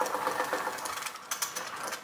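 Projection screen unrolling over the whiteboard, its roller mechanism giving a steady mechanical whir with a few clicks.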